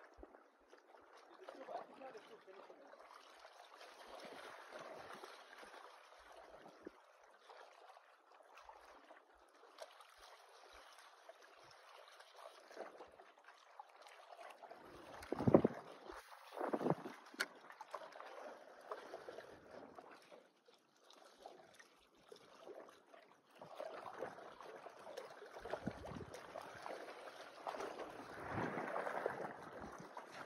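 Wind on the microphone and small choppy waves washing against shoreline rocks, with stronger gusts about halfway through and again near the end.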